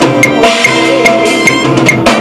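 Drum kit played along with a band backing track: a steady beat of drum and cymbal strikes over pitched melodic instruments.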